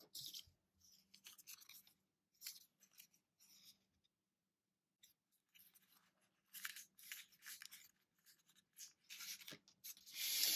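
Intermittent soft rustling and light handling noises from paper packaging and a tissue-wrapped paint sample being picked up and set down on a wooden tabletop, with quiet gaps between the short bursts.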